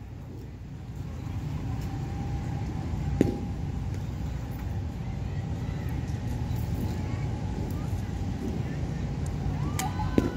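A single sharp crack of a golf club striking a ball about three seconds in, over a steady low rumble.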